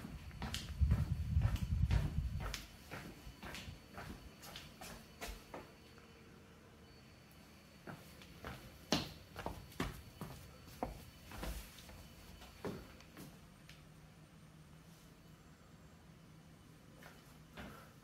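Footsteps on a tiled floor: a run of soft steps and clicks with a low handling rumble over the first two seconds or so, then sparser, fainter clicks after about six seconds.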